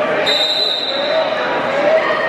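A referee's whistle blows once, a short high steady tone, over the chatter of a crowd in a gym hall.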